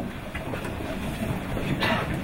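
Low rumbling room noise in a hall, with shuffling and a chair moving as people on the dais shift and sit down, and one short knock or rustle near the end.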